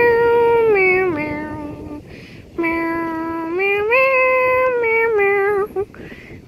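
A child singing long, drawn-out 'meow' notes in a slow tune. The pitch steps down, breaks off about two seconds in, rises again, then falls away into a few short notes near the end.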